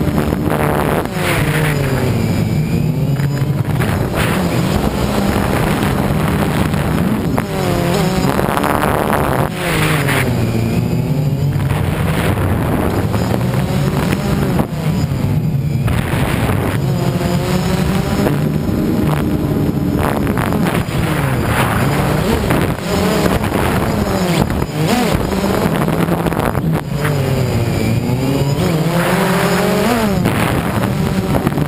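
DJI Phantom quadcopter's motors and propellers buzzing loudly in flight, heard from on board the drone. The pitch keeps rising and falling every few seconds as the motors speed up and slow down.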